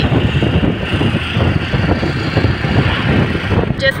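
Steady noise of a car moving along a road, heard from inside the cabin. A voice starts up at the very end.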